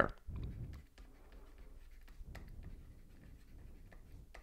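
Faint scratching and light taps of a stylus writing by hand on a tablet or drawing-pad surface, with a soft low rumble in the first second.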